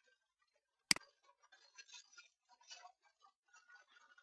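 A single sharp click at a computer about a second in, then faint scattered light clicks and taps from keyboard and mouse as a line of code is entered.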